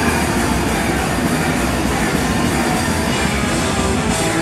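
Hardcore punk band playing live and loud: a dense, unbroken wall of distorted guitar, bass and drums with constant cymbal wash.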